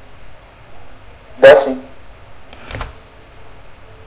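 Faint room tone broken by one short spoken reply, "sim", about one and a half seconds in, followed about a second later by a couple of quick clicks.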